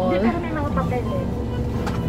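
Steady low rumble of a coach bus's engine running, heard from inside the passenger cabin. A woman's voice trails off in the first moment.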